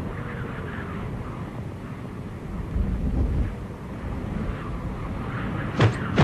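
Kung fu film action sound effects: a steady, wind-like rushing noise over a low rumble, with a sharp impact near the end.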